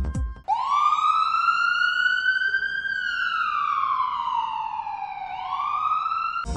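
A wailing siren: a brief gap, then one slow rise in pitch, a longer fall, and the start of another rise near the end.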